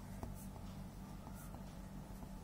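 Pen writing on lined paper: a few faint, brief scratching strokes and light ticks over a low steady hum.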